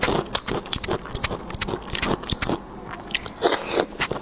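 Close-miked wet, sticky biting and chewing of pork skin rolls, with irregular clicks and smacks.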